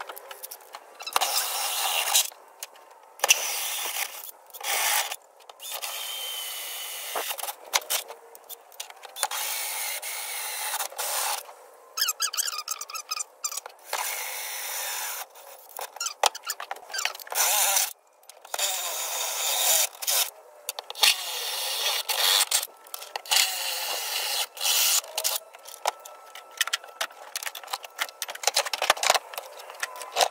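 Cordless drill with a hole saw cutting holes through a plastic cart, running in short stop-start bursts of whining and grinding as the saw bites into the plastic.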